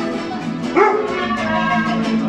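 Mariachi band playing, with held notes from the violins and horns and a short rising call about three-quarters of a second in.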